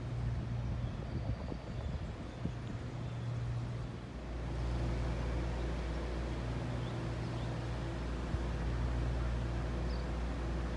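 Steady low machine hum, like an engine or pump running, with no speech. It shifts and grows slightly louder about four seconds in.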